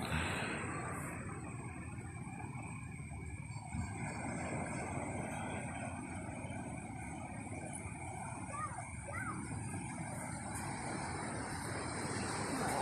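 Steady rushing noise of surf and wind at the shore, with a couple of faint short rising squeaks about nine seconds in.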